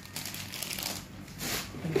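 Small dogs chewing treats: faint, irregular crunching clicks.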